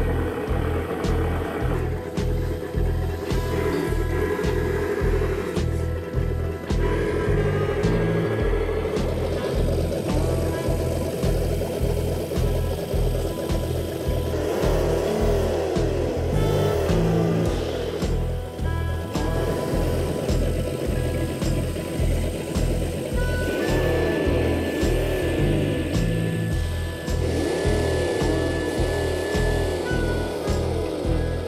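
Background music with a steady beat, over an RC car's V8 engine sound unit revving up and down in waves about halfway through and again near the end.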